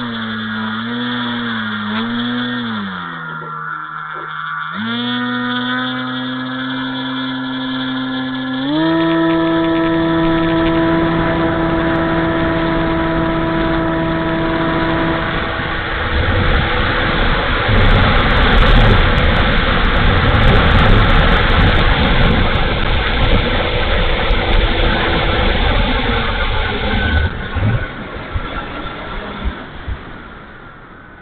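E-flite Timber RC plane's electric motor and propeller whining, heard from an onboard camera: the pitch wavers, dips low about three seconds in, climbs back, then steps up to a steady higher whine about nine seconds in. From about halfway through, a loud rough rumble as the floats run over the snow at speed drowns the whine, easing near the end as the plane lifts off.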